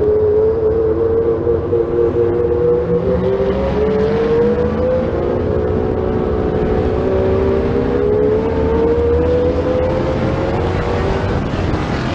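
Stock car's engine running hard under race load, heard from a camera on the car's hood. The engine note dips slightly a few seconds in, then climbs slowly and steadily as the car drives out of the turn onto the straight.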